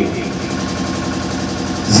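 A motor running steadily, an even hum with a fine regular pulse.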